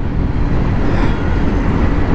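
Steady wind rush and road noise on a moving motorcycle cruising along a highway, heard from a microphone on the bike.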